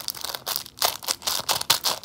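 Homemade fidget, a small plastic bag stuffed with toilet paper and beads, crinkling as it is squeezed and pressed between the fingers, in quick irregular crackles.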